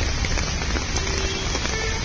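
Heavy rain pouring onto a flooded street: a dense, steady hiss of rain on water with a low rumble underneath.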